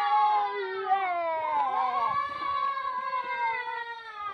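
Several long, drawn-out calls overlapping one another, each held for seconds and sliding slowly in pitch, one falling steadily through the middle.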